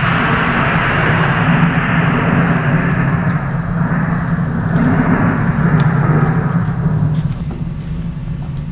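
Storm sound effect played over the hall's speakers: a steady rush of wind and rain over a low rumble, swelling in the middle and easing off near the end.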